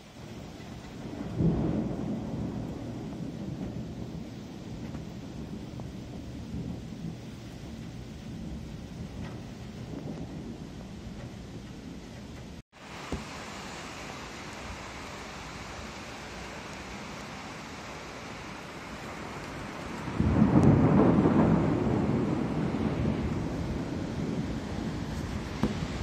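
Thunder: a long rolling rumble starting about a second and a half in and dying away over about ten seconds, then, after a momentary break, a second, louder peal about twenty seconds in that starts abruptly and rolls on as it fades.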